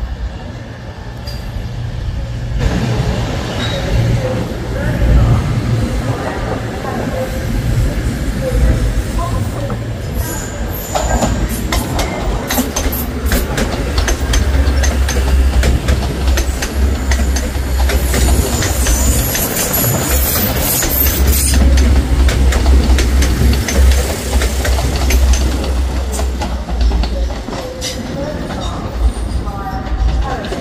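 Diesel multiple units running past a station platform: first a CrossCountry Class 221 Voyager, then a TransPennine Express Class 185 on curved track. A low diesel rumble runs throughout, the wheels click over rail joints in a dense run through the middle, and a high wheel squeal comes about two-thirds of the way through.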